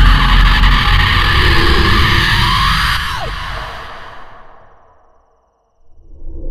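Loud dramatic film score and sound-effect swell in a suspense scene. A falling sweep comes about three seconds in, then the swell fades out to silence over the next two seconds.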